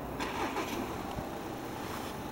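Harley-Davidson Sportster V-twin engine idling, a steady low rumble.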